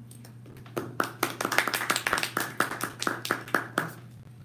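A small audience clapping for about three seconds, starting about a second in, some claps loud and close. A steady low hum runs underneath.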